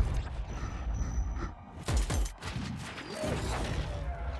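Film sound effects of concrete debris crashing and breaking apart over a low rumble, with heavy impacts at the start and again about two seconds in.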